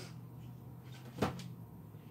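A single sharp knock or click a little over a second in, as an item or its box is picked up and handled, over a faint steady low hum.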